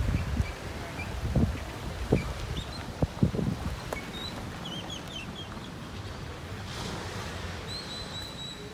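Small birds chirping and twittering in short high calls, with a longer call near the end. In the first few seconds several low bumps on the microphone stand out above them.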